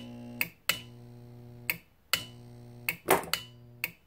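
A large mains transformer hums at the mains frequency in four short bursts, switched on and off by a salvaged 24-volt AC relay whose contacts click at each switching. There is one brief, louder burst of noise about three seconds in.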